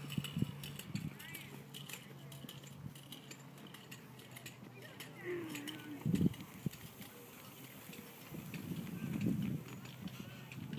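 A weighted steel Prowler sled pushed across grass: its runners scraping and rumbling along, with the pusher's footfalls and a few sharp thumps, the loudest about six seconds in.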